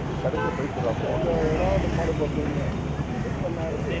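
Road traffic rumble with voices talking in the background.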